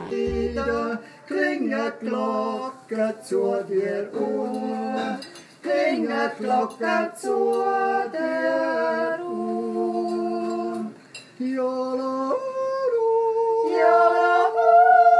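A small group of voices singing a traditional Swiss song a cappella, in harmony, holding long chords that change every second or two, with a short break before a higher chord near the end.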